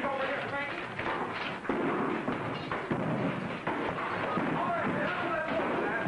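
Commotion of indistinct voices with scattered thumps and knocks.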